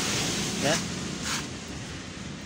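A man's voice says a single short word over a steady background hiss.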